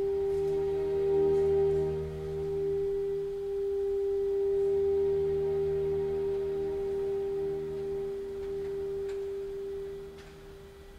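Alto saxophone holding one long, steady note over sustained string chords. Saxophone and strings die away together near the end.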